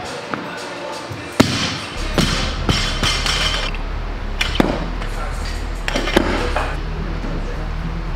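Weightlifting barbell and bumper plates clanking on a gym platform: one loud bang about a second and a half in, then several sharper metal clanks as the plates are handled.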